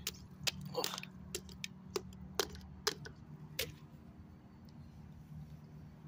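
Small hammer striking a block of ice, chipping it apart to free toys frozen inside: about nine sharp, irregularly spaced knocks in the first four seconds.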